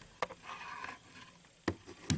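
Handling noise of a camera being set down on a surface: a sharp knock just after the start, a faint rustle, and another knock near the end as it settles.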